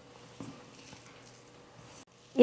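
Faint squishing and rustling of a hand mixing grated potato with flour and spices in a stainless-steel bowl, with one soft knock about half a second in.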